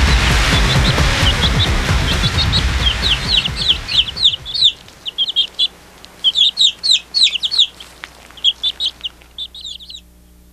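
Small birds chirping in quick runs of short, high notes that each drop in pitch, rising through loud music that fades out over the first few seconds and then carrying on alone until just before the end.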